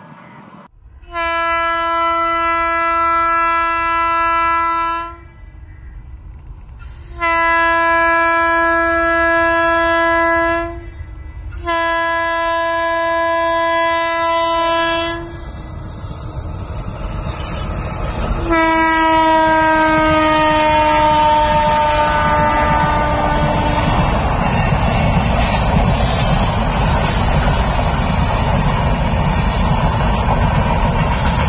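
Passenger train's locomotive horn sounding three long steady blasts, then a fourth blast that falls in pitch as the locomotive passes close by. The coaches then roll past with a steady rumble and clickety-clack of wheels on the rails.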